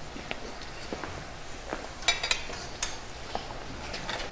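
Scattered light clicks and knocks in a quiet hall, with a few sharper ones about two seconds in.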